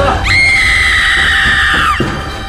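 A woman screaming in fright: one long, high-pitched shriek that rises sharply at the start, holds for about a second and a half, and drops off at the end.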